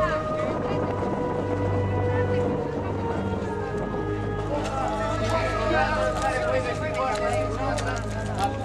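Several people's voices on a film set, talking and calling out over one another, busier in the second half, over a steady low hum and some held tones.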